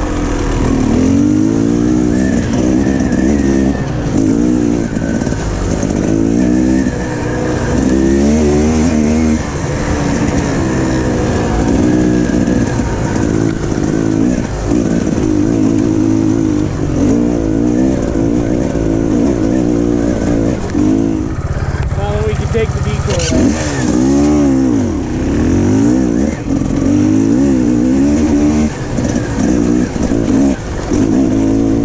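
Sherco 300 SEF dirt bike's single-cylinder four-stroke engine, heard from on the bike, revving up and backing off again and again as it is ridden along a trail. A few sharp clicks come a little over twenty seconds in.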